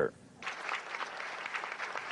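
Audience applause, starting about half a second in after a short pause and running on as an even clatter of clapping.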